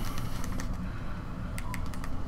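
Keys clicking on the QWERTY keyboard of an LG Google TV remote as letters are typed: a few separate short clicks, several close together in the second half.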